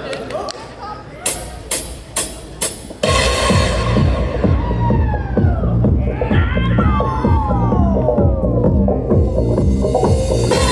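A hall crowd murmuring, four sharp hits about half a second apart, then electronic dance music starting loudly over the PA at about three seconds, with a steady pounding beat and several falling synth tones.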